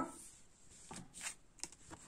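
Oracle cards being slid and shifted on a tablecloth: a few faint, short scrapes of card stock, mostly in the second half.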